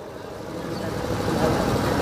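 A low rumbling noise without pitch, swelling steadily over about two seconds.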